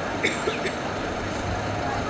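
Steady outdoor road noise from passing traffic, with a few short clicks in the first second and faint voices underneath.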